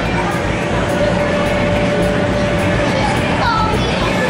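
Steady din of an indoor inflatable playground: the inflatables' air blowers running without a break, with children's voices in the hall.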